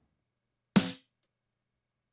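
A single hit of a soloed, gated rock snare drum track played back through EQ, about three-quarters of a second in. It has a heavy low-end thump from a 5 dB boost near 200 Hz and a bright crack and sizzle from high-end boosts. The hit cuts off quickly into silence.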